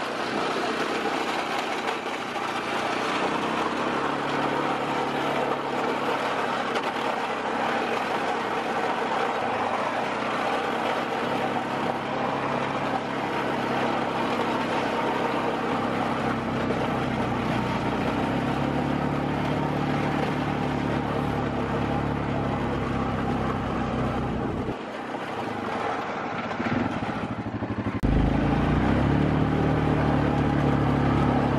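Four-wheeler (ATV) engine running as it drives along, its note holding steady most of the time. It drops briefly about 25 seconds in, then rises and runs louder near the end.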